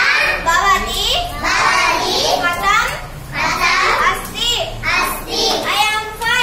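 Children's voices reciting short phrases aloud, one after another with brief pauses between them.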